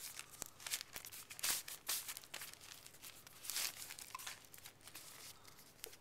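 Paper CD sleeve and packaging inserts rustling and crinkling as they are handled and lifted out of a phone box, in short irregular bursts.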